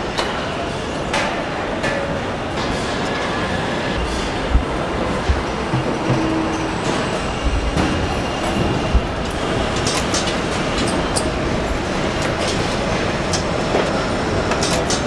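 Assembly-line machinery in a car plant: a steady mechanical din with scattered sharp clicks and clanks, and a few dull thumps in the middle.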